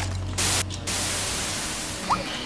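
Electronic static hiss: a click, then a short louder burst of hiss about half a second in, followed by a steady hiss that slowly fades.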